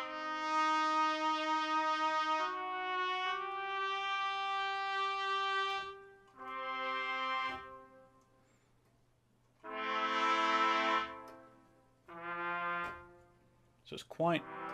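Sampled solo trumpet from Project SAM's Orchestral Essentials sustain patch, played from a keyboard. It plays a connected legato phrase of three held notes stepping upward, then three separate shorter notes with short silences between them. The note about ten seconds in is the loudest.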